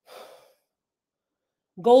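A woman's short breath, about half a second long, then her speech begins near the end.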